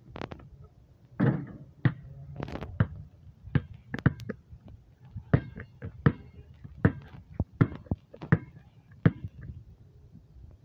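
A basketball being dribbled on a concrete driveway: a run of sharp bounces, settling into an even beat of about one bounce every 0.7 seconds in the second half.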